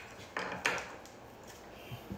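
Plastic knobs being pulled off a gas stove's valve stems: a few short clicks and scrapes, two close together about half a second in.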